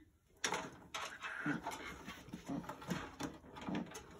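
Rustling and light clicking of a front-panel cable being handled and seated on a motherboard header inside a PC case, with a few brief, faint voice-like sounds.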